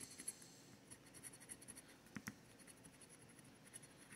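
Faint scratching of a scratch-off lottery ticket's coating being rubbed away with a scratching tool, with a couple of light ticks.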